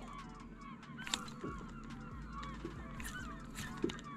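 A distant flock of birds calling: many short, overlapping honking calls, faint and continuous, with a few light clicks.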